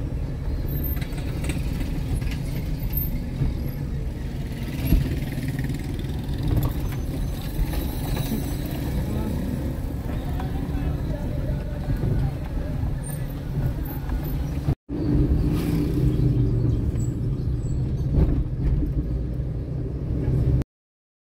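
Steady low rumble of a car's engine and tyres, heard from inside the cabin while driving, with voices in the background. The sound cuts out for an instant about three-quarters of the way through.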